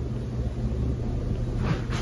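Low, steady background rumble with no speech, and a soft rustle of fabric near the end as a knit top is pulled up.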